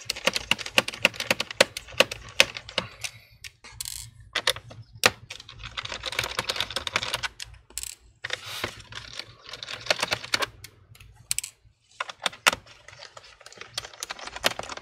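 Phillips screwdriver backing small screws out of a laptop's plastic bottom case: irregular quick clicks and scratchy turning noise, in several spells with short pauses between them.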